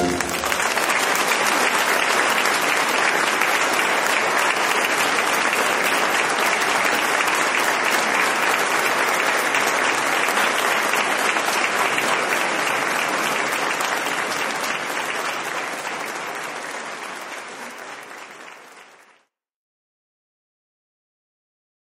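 Audience applauding steadily after the music ends, the clapping dying down over the last few seconds before it cuts off.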